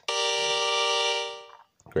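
Harmonica draw chord on holes 2, 3 and 4, played back by the modular-reed harmonica builder web app: G, B flat and D, a G minor chord, because the 3 draw has been retuned from B to B flat. It sounds steadily for about a second and then fades out.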